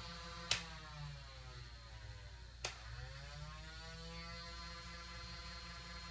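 Low steady hum in a quiet room, with two short soft clicks, one about half a second in and one around the middle.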